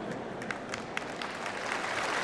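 Audience applauding, with single claps standing out and the clapping growing louder toward the end.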